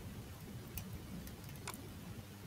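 Two faint clicks of a computer mouse button, about a second apart, over a low steady hum.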